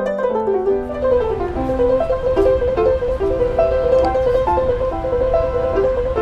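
Upright piano being played: a descending run of notes, then a quick figure that keeps returning to one high note over changing lower notes, over a steady low background rumble.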